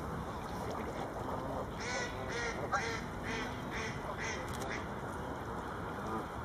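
Canada geese calling: a quick series of about seven short honks, evenly spaced, from about two seconds in to near the end.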